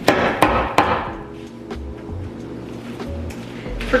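A bag of hardened brown sugar knocked hard against a surface: three sharp knocks in the first second, then a couple of lighter ones. The sugar has set into a solid rock-hard lump. Background music runs underneath.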